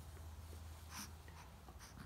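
Baby rolling over on a quilt: faint rustling of cloth, with two short breathy sounds, about a second in and near the end.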